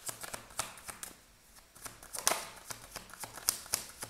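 Tarot cards being shuffled by hand: a run of quick, crisp card clicks that thins out about a second in, then picks up again, louder and denser, for the second half.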